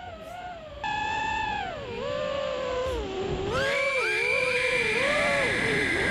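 Brushless motors of an iFlight Nazgul5 FPV quadcopter whining in flight, the pitch sliding up and down with the throttle, louder from about a second in. From about halfway a steadier high tone runs alongside.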